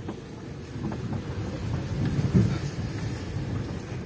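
Low rumble and rattle inside a car's cabin as it drives slowly over a potholed, flooded dirt street, a little louder a couple of seconds in.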